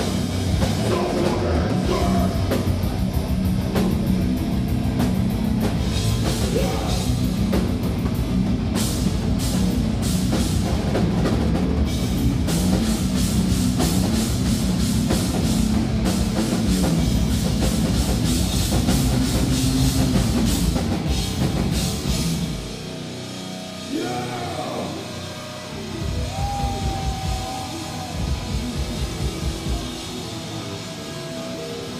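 Heavy metal band playing live: distorted guitars, bass and a drum kit at full volume. About 22 seconds in the full band drops out, leaving a quieter stretch of single guitar notes, some sliding in pitch, over scattered drum hits.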